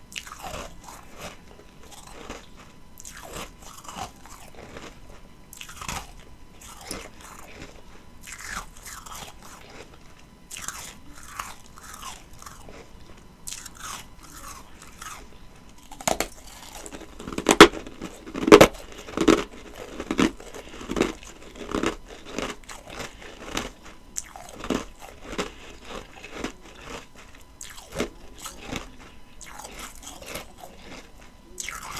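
A person biting and chewing ice, with crisp crunches throughout. A run of loud bites comes just past the halfway point, followed by steady chewing.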